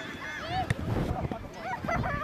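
Several high-pitched children's voices shouting and calling across a football pitch, with one sharp knock about a third of the way in.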